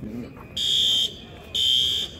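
Fire alarm horn sounding the evacuation signal in temporal code 3: a pause, then two half-second blasts of a high, buzzing tone about a second apart.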